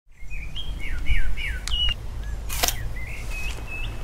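Songbirds chirping in a quick series of short falling whistles over a low steady rumble, with a brief noisy burst a little past halfway.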